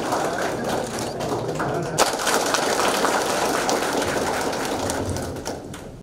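Audience applauding: dense, steady clapping from many hands that fades away near the end.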